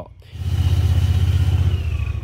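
An engine running close by: a loud, steady low rumble with an even pulse and a faint high whine above it that drops slightly near the end.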